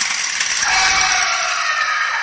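A bright ringing, jangling sound cuts in abruptly from dead silence, its several held tones drifting slightly and slowly fading.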